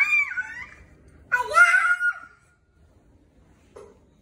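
A young child's voice squealing twice, high-pitched and bending in pitch, each squeal under a second long, in a small room.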